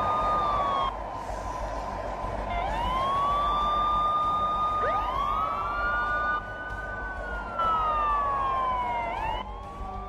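Police sirens wailing, at least two at once, their pitches sweeping slowly up and down and overlapping, over a low rumble.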